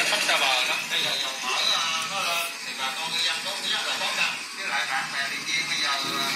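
A radio broadcast playing from a car stereo head unit's FM tuner through a loudspeaker: music with a voice over it.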